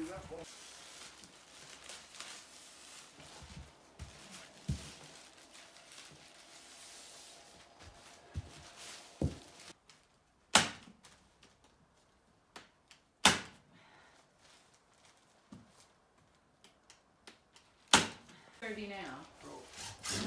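Three sharp, loud clacks, a few seconds apart, from a staple gun fixing plastic sheeting over a window opening.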